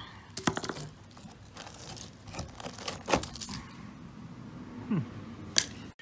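Screwdriver prodding and scraping at a car's rusted-through steel quarter panel, with scattered cracks and crunches as flaking rust breaks away; the rot goes right through the panel. A man's short "hmm" comes near the end.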